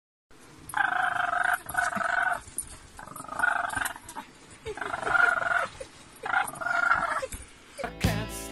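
Short-haired Brussels Griffon growling in play while tugging at a blanket: about six short growls, each under a second, with the blanket rustling between them.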